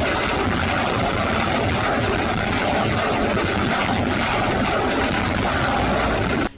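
A launched rocket's motor heard in flight as a loud, steady, even rushing noise.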